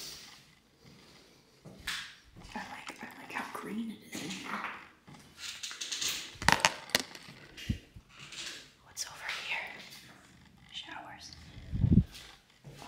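Soft whispering and breathing close to the microphone, with scattered crunches and clicks of footsteps on a debris-strewn floor. Sharp knocks come about six and a half seconds in, and a louder low thump near the end.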